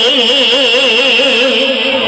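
A woman's voice singing a gojol (Bengali Islamic devotional song), holding one long note with a wide, even vibrato that fades near the end.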